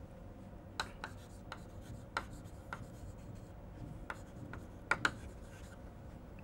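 Chalk writing on a chalkboard: a string of faint, short, sharp taps at irregular intervals as the chalk strikes and strokes across the board.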